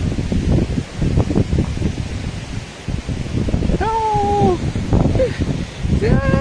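Wind buffeting a phone's microphone in rough, uneven gusts. About four seconds in, a high voice calls out once, held for under a second, and a shorter call follows a second later.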